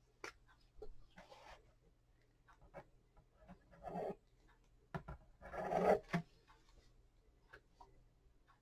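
Hands handling and rubbing a cardboard box and paper packing on a table, with scattered light knocks and taps. There are two louder rubbing passages, a short one about four seconds in and a longer one about five and a half to six seconds in.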